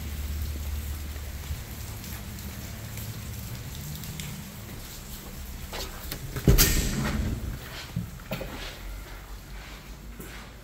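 Steady low rushing noise, then a loud thump about six and a half seconds in as a glass-panelled entrance door is pushed open, followed by a few fainter knocks.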